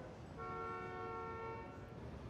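A car horn sounding once, held for about a second and a half, over a low rumble of city traffic.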